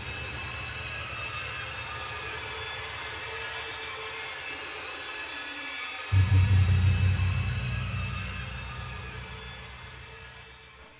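Dark, ominous background music: a low droning rumble under sustained high tones, then about six seconds in a sudden deep boom that slowly fades away.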